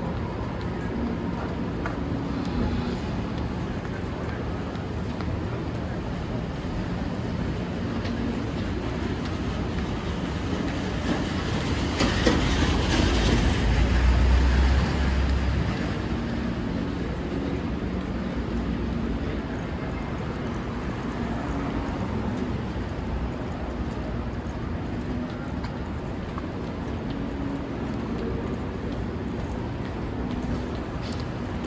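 Manhattan street traffic noise: a steady wash of city sound, with a louder deep rumble swelling about halfway through and fading a few seconds later.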